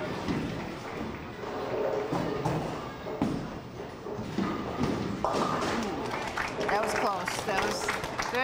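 Bowling-alley sound: a ball thuds and rolls down the lane, then knocks into the pins. Crowd chatter runs throughout, with voices and clapping near the end.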